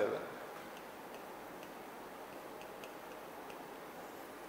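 Faint, irregular ticks and taps of writing strokes on a classroom board, over a low steady room hiss.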